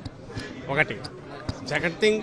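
Short fragments of a voice amid a crowded press scrum, with one sharp knock about one and a half seconds in.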